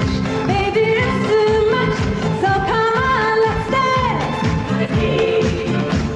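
A woman singing a disco song over a band with a steady beat.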